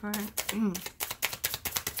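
A deck of oracle cards being shuffled by hand: a rapid run of crisp card clicks, about eight to ten a second.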